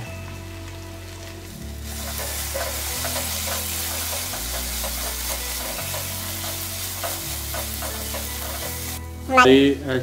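Okra, onions and spice masala sizzling in a pot while a wooden spatula stirs and turns them, the sizzle coming up about two seconds in. Background music with a slow bass line plays underneath.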